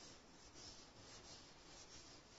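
Faint swishing of a duster wiped across a whiteboard in quick repeated strokes.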